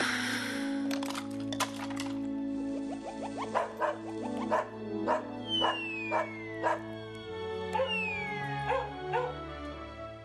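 Cartoon soundtrack: music with a regular beat of short strikes starting a few seconds in, dog barks as a sound effect, and a falling whistle-like glide twice in the second half.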